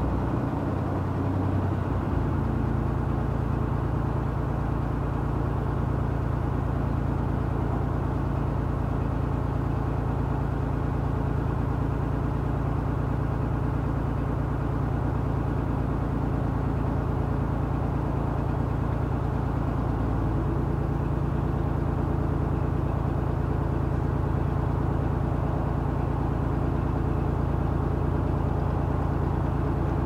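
A narrowboat's diesel engine running at cruising speed with a steady, rapid beat. It picks up to a higher note about two seconds in and shifts slightly about twenty seconds in.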